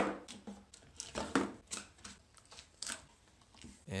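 Plastic spring clamps being pulled off a wooden mold box and dropped on a workbench: a string of sharp clicks and clacks, about six, the loudest at the very start.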